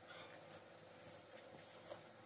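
Near silence, with a few faint scratchy rustles as a paper cup is turned in the fingers while melted chocolate coats its inside.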